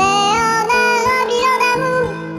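Song with high, sped-up chipmunk-style singing over a backing track; the voice slides up into a note at the start, then holds a run of sustained notes.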